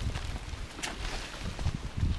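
Wind buffeting the microphone in an uneven low rumble, with a couple of brief rustles from a large woven plastic sack being carried.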